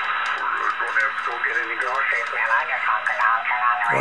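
Amateur radio voice transmissions on the 40-metre band, received by an RTL-SDR and played through a speaker. The voices are thin and muffled, with a steady low hum underneath, and they shift as the receiver is tuned down in frequency.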